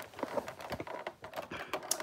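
Rapid, irregular faint clicks and rustles of hands working the end of a long synthetic-hair braid, unravelling it close to the microphone.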